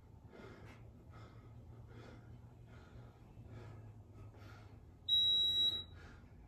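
Faint, quick breaths of a man exercising, about two a second, then about five seconds in a single high-pitched electronic beep lasting under a second, the loudest sound.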